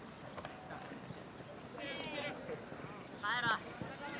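Young players' high-pitched shouts on a soccer pitch: a short call about two seconds in and a louder one near the end, over the faint background noise of the game.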